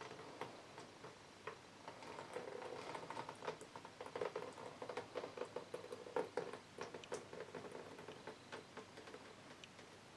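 Faint, irregular ticks and patter of excess acrylic paint dripping off a tilted vinyl record into a plastic bin, mixed with small taps from fingers handling the record.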